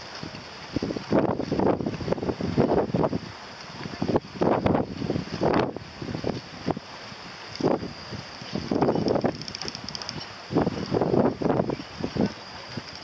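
Wind buffeting the microphone in irregular gusts, over a steady faint high hiss.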